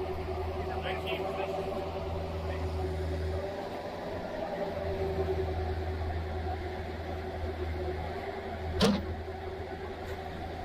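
Engine of heavy digging machinery running steadily with a low hum. The hum dips briefly about four seconds in, and a single sharp knock comes near the end.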